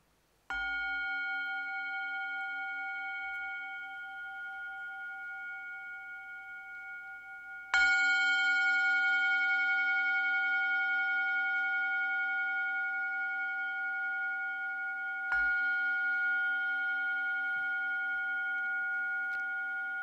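Singing bowl struck three times, about seven and a half seconds apart, each strike ringing on as a long, slightly wavering hum that carries into the next. The second strike is the loudest.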